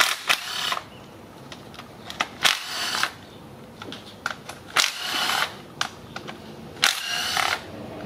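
Cordless power driver with a socket spinning out camshaft bearing cap bolts, running in four short bursts of about half a second each, with small clicks of the socket and bolts in between.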